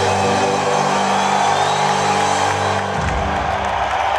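A live band's closing sustained chord, with piano, held and then cut off about three seconds in, while the arena crowd cheers under it and on after it.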